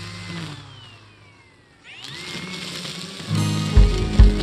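Cordless DeWalt electric string trimmer: its motor whine falls as it slows, then rises sharply as it spins back up about halfway through. Music with a drum beat comes in near the end.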